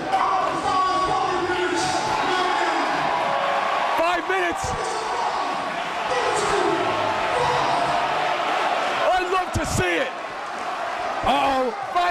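A man shouting a speech into a handheld microphone, his voice amplified through a hall's PA and echoing, with the crowd audible beneath. The loudest shouts come about four seconds in and again near ten seconds.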